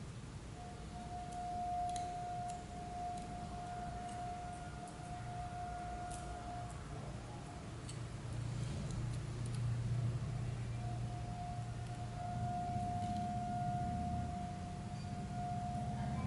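A steady high tone held for about six seconds, breaking off and returning about four seconds later, over a low hum, with a few faint clicks.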